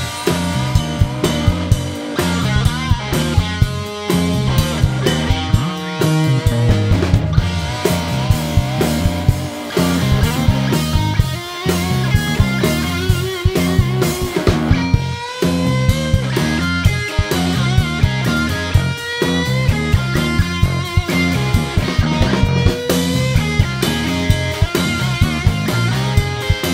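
Live electric blues-rock trio playing an instrumental passage: electric guitar playing lead lines over a steady repeating bass guitar riff and a full drum kit.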